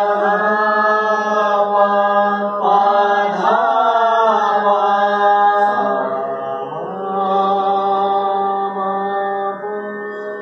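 A voice singing long, held notes in vocal practice, each held two to three seconds, with a sliding ornament about three and a half seconds in, over a steady low drone.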